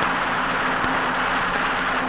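Vinyl playback of a 1967 Wyncote budget LP of TV themes: a loud, steady rushing, hiss-like passage over a low held tone, with an odd surface tick. It eases off near the end.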